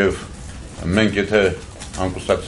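A man speaking Armenian at a microphone, with a short pause and then a few words about a second in.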